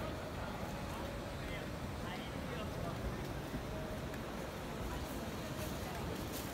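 Busy city street ambience: indistinct chatter of many people in a crowd over a steady low rumble of urban noise.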